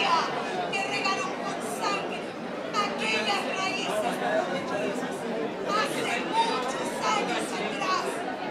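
Speech: a woman talking animatedly into a stage microphone, with the hall's echo.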